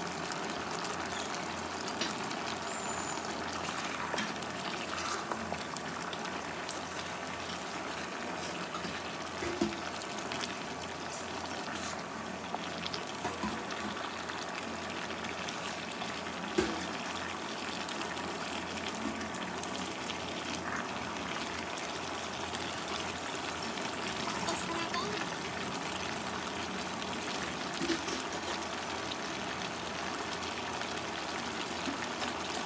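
Beef stew broth simmering in a wok-style pan with a steady hiss, and a few sharp clacks of a wooden spatula and spoon against the pan as it is stirred, the loudest about halfway through.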